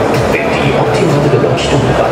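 Loud music playing over a sports hall's public-address speakers, with voices mixed in, echoing in the hall.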